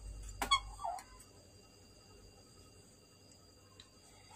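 A single click and a short faint squeak within the first second as the sawn-out amplifier board is handled. Then near silence with a faint, steady high-pitched whine.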